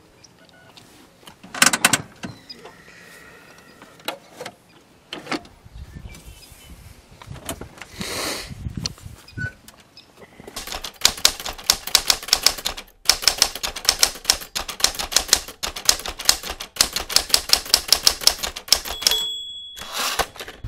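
Typewriter sound effect: rapid key clacks in runs through the second half, with short pauses between runs, ending in a carriage-return bell ding. Scattered softer clicks and knocks come before it.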